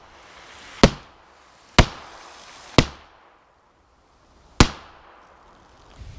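Beretta 92FS 9mm pistol firing four shots, about a second apart, with a longer pause before the last. Each shot cracks sharply and dies away in a short echo.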